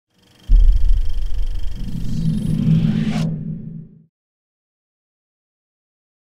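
A deep rumbling sound effect that starts suddenly about half a second in, with a rising whoosh near three seconds. It cuts off sharply a little after three seconds, leaving a low rumble that dies away by four seconds.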